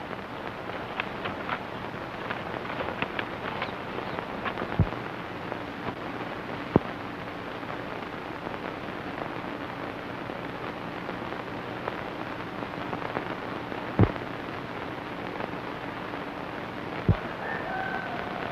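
Surface noise of an early-1930s optical film soundtrack: a steady hiss and crackle with a faint low hum under it, and four sharp pops spread through it.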